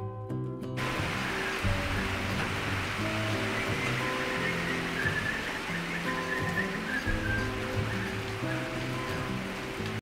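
Steady rain falling, a constant hiss that sets in about a second in, under background music of sustained notes.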